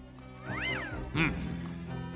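A cartoon cat meowing once, a short call that rises and falls, over orchestral background music.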